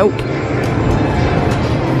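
Steady din of a busy indoor arcade: an even wash of machine noise and distant crowd chatter, with a few faint light clicks.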